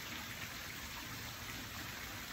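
Steady, even background hiss of backyard ambience, with no distinct event.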